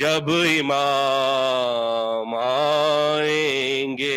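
A man singing Urdu devotional verse unaccompanied, drawing out long held notes that glide up and down in pitch.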